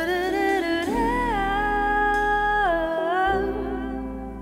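A female vocalist singing live into a microphone over soft band accompaniment. She glides up about a second in, holds one long note, then drops to a lower note near the end.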